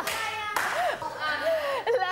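Hand clapping mixed with people talking.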